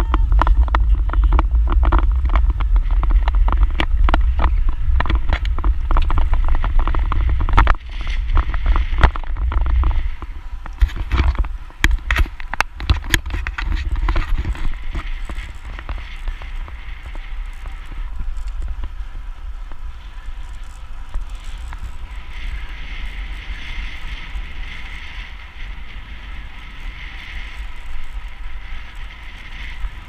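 Wind buffeting the microphone of a camera riding along on a moving road bicycle, with tyre noise on the tarmac path. Heavy rumble in the first several seconds, a run of sharp clicks and knocks from about eight to fourteen seconds in, then lighter, steadier wind and rolling noise.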